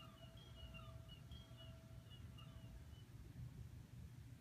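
Near silence: faint short high chirps and a faint held tone from the TV for about three seconds, over a low steady room hum.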